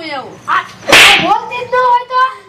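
Women's voices talking in an animated way, cut about a second in by a sudden loud burst of noise lasting under half a second, the loudest sound here; the voices pick up again after it.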